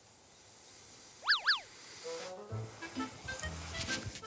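Edited-in comedy sound effects and background music: a rising whoosh, then two quick cartoon pitch sweeps that go up and come straight back down, followed by a light tune of short plucked notes.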